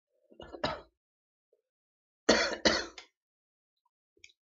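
A woman coughing twice, sharp and close together, after a short throat-clearing cough just before, as the vapour from a sub-ohm vape hit at half an ohm and 20 watts irritates her throat.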